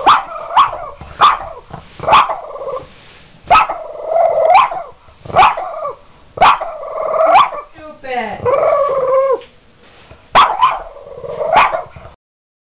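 Boston terrier barking repeatedly at an upright vacuum cleaner that is switched off: short barks that drop in pitch, roughly one a second with pauses, and one longer drawn-out call about eight seconds in. It is alarm barking at an object the dog treats as a threat.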